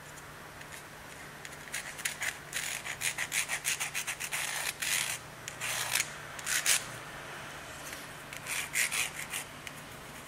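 A red pencil scratching in quick short strokes as it traces a knife template's outline onto a horn handle blank, with a pause about seven seconds in before a few more strokes. A steady low hum runs underneath.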